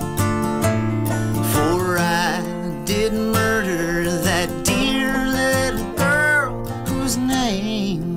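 Open-back banjo and acoustic guitar playing an old-time folk ballad together, with a man's singing voice over them.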